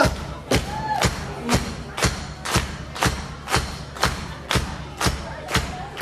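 Drum kit keeping a steady beat of about two strikes a second as a song's intro, with a short shout about a second in. The full band comes in at the very end.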